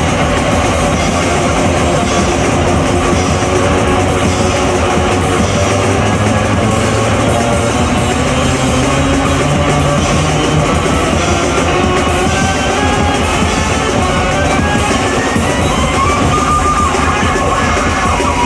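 Loud live noise rock from a bass-and-drums duo: heavily distorted electric bass and fast, dense drumming on a full kit, playing without a break. Over the last few seconds a higher line climbs in pitch above the din.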